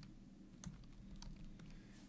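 A few faint clicks from computer input while entering a name into the simulated teach pendant, the clearest one just past half a second in, over quiet room tone.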